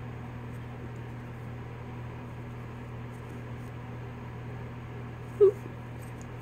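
Quiet room with a steady low hum and a few faint light ticks. About five and a half seconds in, one very short, loud, pitched yelp-like sound cuts through.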